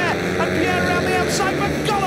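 Several 500cc single-cylinder speedway bikes racing through a turn on the first lap. Their engine notes slide down in pitch around the start and again near the end.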